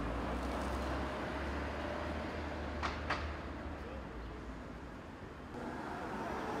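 Outdoor street ambience with a steady low traffic rumble, and two sharp clicks close together about three seconds in.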